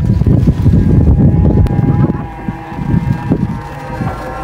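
Wind buffeting the microphone: a loud, gusting low rumble. Underneath it runs a faint, steady, slightly wavering hum.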